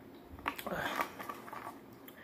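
Mouth and breath sounds of a person drinking from a bottle and taking it from her lips, starting about half a second in and fading after a second or so.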